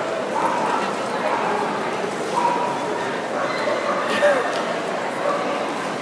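A dog whining a few short times over steady, indistinct crowd chatter filling a large hall.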